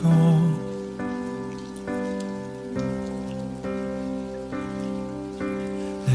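Instrumental break of a slow ballad: sustained chords that change about once a second, over a steady hiss of rain.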